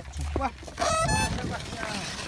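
A short, high-pitched animal call about a second in, rising in pitch, over a low rumble.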